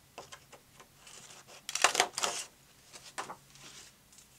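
Patterned cardstock rustling and tapping as it is handled, with a loud cluster of sharp crunching clicks from a craft paper punch cutting through it about two seconds in.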